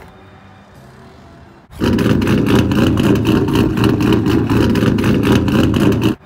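A loud vehicle engine running steadily with a rapid pulsing beat. It starts suddenly about two seconds in after a quiet stretch and lasts about four seconds.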